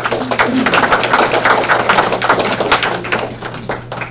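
Audience applauding: many hand claps swelling at the start and thinning out near the end.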